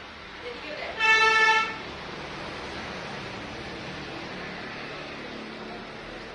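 A vehicle horn honks once, a single steady toot under a second long, about a second in, over steady street traffic noise.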